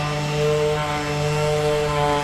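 Handheld electric power tool running at a steady speed against a boat hull, its motor giving one constant whine with no change in pitch.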